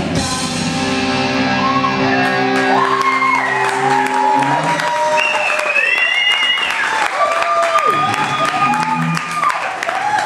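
Live rock band's closing chord, with the bass and drums dropping out about two seconds in while guitar notes hang on, then an audience cheering and whooping.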